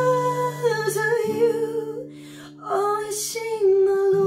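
A woman singing long held notes of a slow song over a strummed acoustic guitar, its chords left ringing. The guitar changes chord about a second in.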